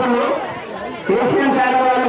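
A man's voice amplified through a handheld microphone, its sounds drawn out in long held notes; it drops back briefly and comes in loud again about a second in.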